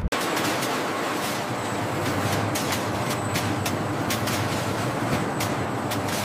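Textile mill machinery running: a steady mechanical rattle with irregular sharp clicks, cutting in suddenly at the start.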